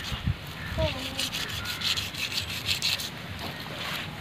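Knife blade scraping scales off a large fish in a fast run of short, rasping strokes that thin out near the end.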